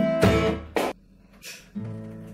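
Acoustic guitar strummed, a few chords in the first second, then a brief near-silent pause before the guitar sounds again near the end.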